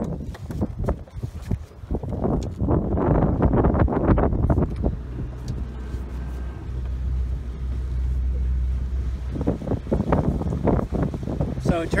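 Deck boat's engine running under way, with wind buffeting the microphone and water rushing past the hull; it grows louder about two seconds in.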